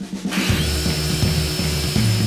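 Corded circular saw starting up about a third of a second in and cutting through a wooden board, a steady whine over the noise of the cut.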